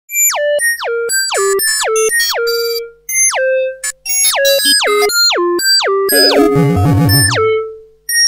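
Electronic synthesizer music made of quick falling pitch glides, one after another, breaking off briefly about three seconds in and again at four. A wobbling, warbling passage comes in about six seconds in.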